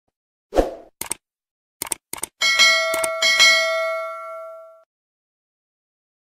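Subscribe-button animation sound effects: a soft thump, a few sharp mouse clicks, then a bright notification bell chime struck about three times that rings on and fades away.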